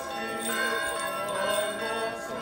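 Many small bells jingling and ringing together, with voices singing behind them.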